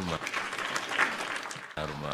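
Audience applause, a short burst of clapping that gives way to a man's voice about a second and three quarters in.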